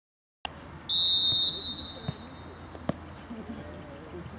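Referee's whistle blown in one long blast for the second-half kick-off, loud at first and then trailing away, followed by two sharp knocks.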